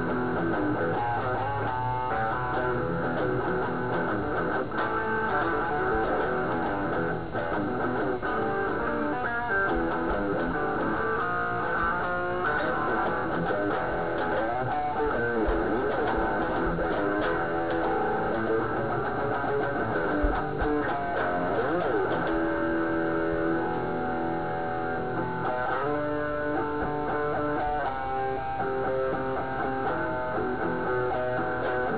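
Electric guitar played without a break, a run of notes and chords with a few bent notes near the middle and again later.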